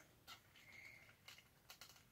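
Near silence with faint handling noise: soft rustles and a few light clicks as a semi-rigid plastic stoma protector is positioned against the stomach.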